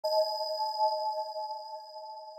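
A single electronic bell-like chime struck right at the start, several tones ringing together and slowly fading away.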